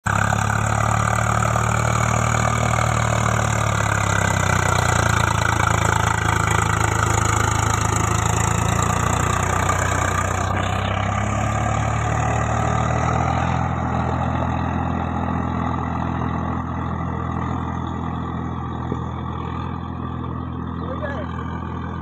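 Swaraj 744 FE 4x4 tractor's three-cylinder diesel engine running steadily under load while its rotavator churns wet mud and water, a steady engine drone with a dense splashing hiss above it. The hiss drops away about halfway through, and the whole sound slowly fades as the tractor moves off.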